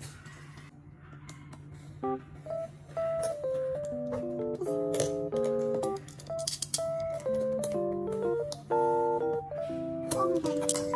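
Background music: a light melody of clear, steady notes with chords, coming in about two seconds in after a quiet start.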